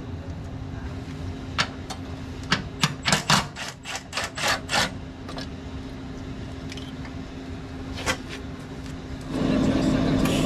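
A quick run of sharp metallic clicks and clanks, about ten in three seconds, as a steel bracket is worked into place with a wrench and locking pliers, over a steady low hum. Near the end a louder steady noise comes in.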